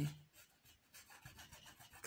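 Paintbrush rubbing acrylic paint onto a canvas: faint, irregular scrubbing strokes.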